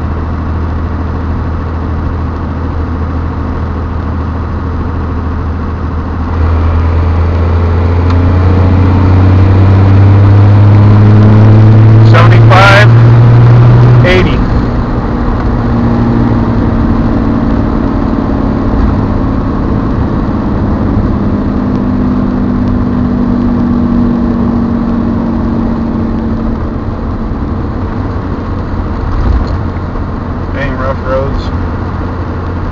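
Dodge Ram's Cummins turbo-diesel engine, heard from inside the cab, pulling under hard throttle. It gets louder about six seconds in and climbs in pitch for about eight seconds, then drops back suddenly near the middle and settles to a steady cruise. A few sharp noises come just before the let-off.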